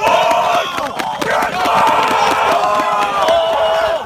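A high school football team shouting and chanting together in a pregame hype line, loud overlapping yells held on long vowels, with a quick run of sharp hand slaps as players pass through the line.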